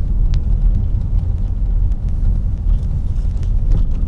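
Steady low rumble of a car's engine and tyres heard from inside the cabin while driving, with one brief high tick about a third of a second in.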